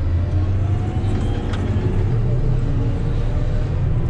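Komatsu GD655 motor grader's diesel engine running steadily, heard as a low drone from inside the cab while the machine is driven along a dirt road.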